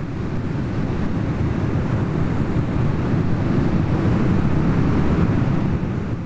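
Steady rushing surf-and-wind noise, an ocean sound effect under the title cards, loud and even with no pitched tones.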